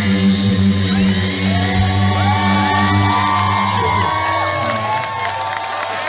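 Live rock band with electric guitars through a PA holding a sustained final chord, which stops about two-thirds of the way in. Audience cheering and whooping over it, building up as the chord ends.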